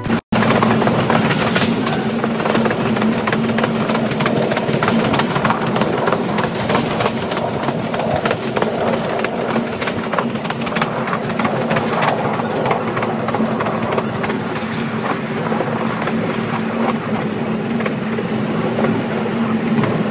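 Passenger train running at speed, heard from inside the carriage: a steady rumble with constant rattling and clattering and a low steady hum underneath.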